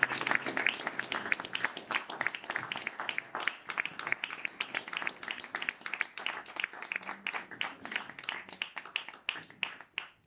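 A small audience applauding in a room, the clapping slowly dying away.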